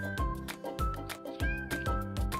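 Cute background music with a steady beat, and a very young kitten giving one short, high mew about a second and a half in while it feeds from a bottle.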